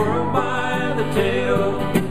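Bluegrass duo playing acoustic guitar and mandolin, with a sung vocal line gliding between notes over the picking.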